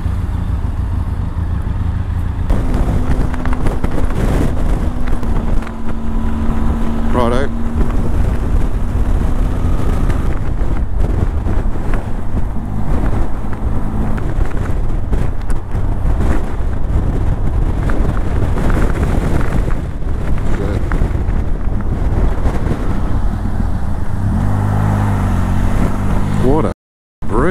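Motorcycle engine running as the bike pulls out and rides along the road, with heavy wind buffeting on the microphone. A brief warbling tone sounds about seven seconds in.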